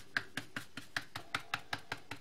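Foam-tipped ink stylus dabbing dye ink onto glossy cardstock: quick, even taps, about five a second.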